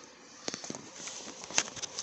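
Hand trailer winch being handled: a run of light, irregular clicks and rattles from its ratchet and crank handle, a few a second.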